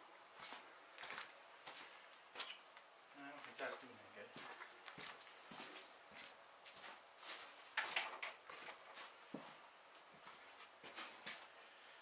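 Faint scattered footsteps, knocks and clatters of a person moving about and handling things in a small shop, with a brief low murmur a few seconds in. No engine is running.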